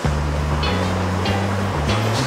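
Background music: sustained low bass notes that start suddenly and shift pitch every half second or so.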